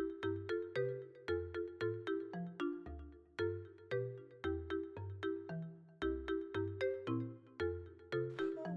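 Background music: a quick melody of short, evenly spaced notes, about four a second, over a bass line that steps to a new note every half second or so.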